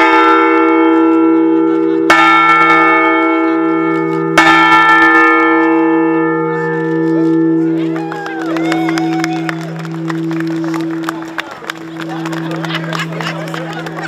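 A large bell rung by a rope, ringing at the start and struck twice more about two seconds apart: three strokes in all. Each stroke leaves a long, slowly fading hum that carries on to the end, while crowd chatter rises over it in the second half.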